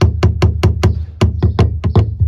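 A glass jar knocked repeatedly against the fill opening of a plastic spray tank as it is shaken empty. Sharp knocks come about five a second with a short pause near the middle, each with a low thump from the hollow tank.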